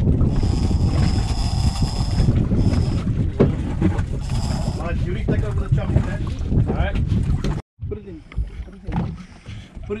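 Low rumble of a sport-fishing boat's engine with wind buffeting the microphone and indistinct voices. The sound drops out abruptly about three-quarters of the way through and returns quieter.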